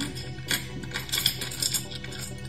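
Several light, sharp clinks of hard crystal stones knocking together, over soft background music.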